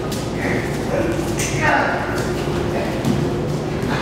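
Grapplers scuffling and a body thudding onto a padded foam mat during a takedown, with a few short thumps, among indistinct voices in the room.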